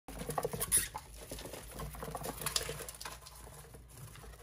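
Hamster scurrying over wood-shaving bedding: light, irregular rustling and pattering with a few sharper scratchy clicks, the loudest within the first second.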